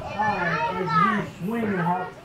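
Children's voices chattering and calling out during an active class, with no clear words.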